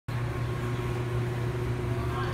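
Steady low mechanical hum with a fainter, higher steady tone over it.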